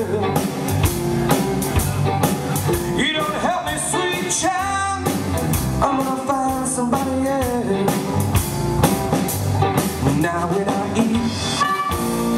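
Live electric blues band playing with drums, bass and guitar under a bending, wailing lead melody line.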